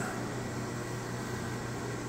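Steady background hum and hiss, like a fan running, with no sudden sounds.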